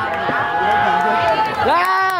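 Loud, drawn-out, high-pitched shouting voices: a held call lasting about a second, then another call that rises and falls near the end.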